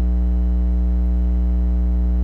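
Steady low electrical mains hum with a buzz of evenly stacked overtones.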